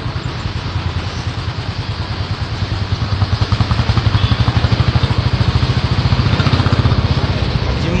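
An engine running with a fast, even pulse, getting louder about three seconds in.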